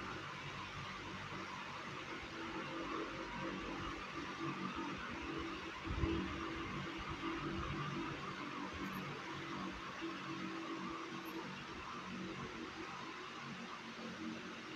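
Steady hiss and faint low hum of room tone, with a single soft low thump about six seconds in.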